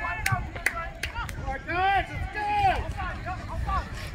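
Shouted calls and yells from youth football players and sideline spectators as a play gets going, with several sharp clicks in the first second or so. A low wind rumble sits on the microphone underneath.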